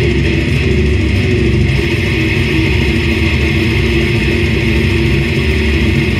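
Slam death metal band playing live: heavily distorted down-tuned electric guitar, bass and drums in a loud, dense, unbroken wall of sound, with the vocalist's guttural growls into the mic.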